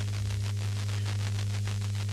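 Dead air on an off-air recording of a pirate FM radio station: a steady low mains hum under radio hiss and a fine, fast crackle of static.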